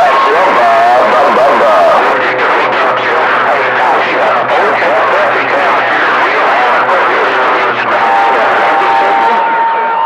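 CB radio receiver on channel 28 picking up distant stations over skip: garbled voices buried in heavy static and fading noise. A steady whistle tone comes in about 8 seconds in.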